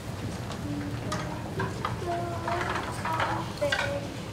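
A group of young violin students raising their instruments into playing position: scattered clicks and rustling, a few short stray notes and a low murmur, building toward the end.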